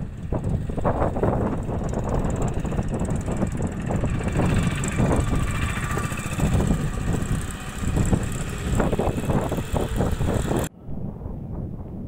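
Loud, uneven low rumbling outdoor noise, with no clear engine note, that cuts off suddenly near the end and leaves a quieter hiss.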